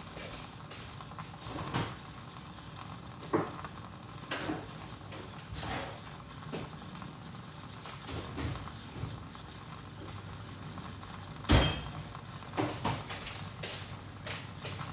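Scattered knocks and clatters of household items being handled off-camera, typical of cupboard doors and dishes, with the loudest bang about three-quarters of the way through.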